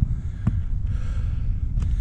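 Wind rumbling on the microphone, with a person breathing out about halfway through and two light clicks, one near the start and one near the end.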